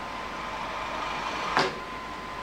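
Steady background hiss with a faint steady tone, and one short sharp noise about one and a half seconds in.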